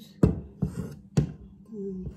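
Pieces of fresh ginger root dropped into a blender jar: three sharp knocks within about a second.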